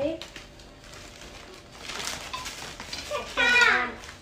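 Faint rustling and handling as flour is shaken from a plastic bag into a steel mixing bowl, then, about three seconds in, a young girl's loud exclamation that falls in pitch.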